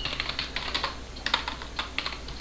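Typing on a computer keyboard: an irregular run of keystroke clicks.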